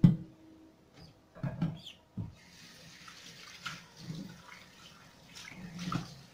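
Kitchen tap turned on about two seconds in, running steadily into a stainless steel sink while a metal saucepan is rinsed under it. A few knocks and clinks of the pot against the sink come before the water and during it.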